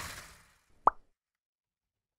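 Outro animation sound effects: a soft whoosh fading out, then a single short pop, like a plop, just under a second in.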